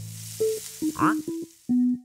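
Cartoon soundtrack: a faint hiss fades out, then a run of short, separate musical notes follows, with a quick upward-sliding whistle about a second in and a lower held note near the end.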